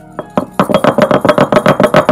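Stone roller striking rapidly on a stone grinding slab (ammi kal), about nine or ten loud knocks a second, crushing cardamom pods. The pounding starts a moment in and builds quickly to full strength.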